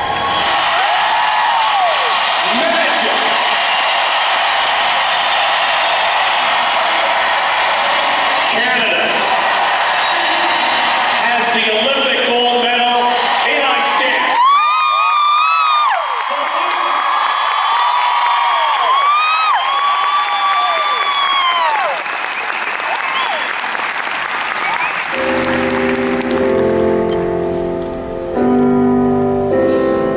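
Arena audience cheering and applauding, with long high-pitched screams and whoops from fans through the middle. Piano music comes in near the end.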